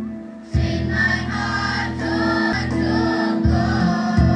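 Mixed choir of young men and women singing in parts, with electronic keyboard accompaniment. A held chord fades away, then about half a second in the choir and keyboard come in together on a new phrase.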